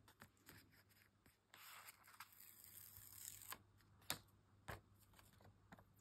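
Faint rustling of paper stickers being handled, with a few light, sharp clicks in the second half.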